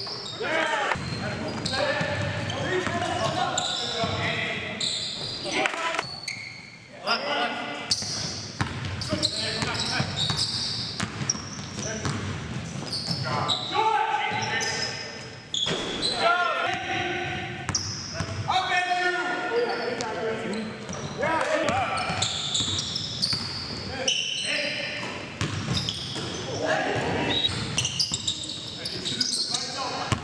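Basketball game sounds in a gymnasium: the ball bouncing on the hardwood court amid players' indistinct shouts and calls, echoing through the large hall.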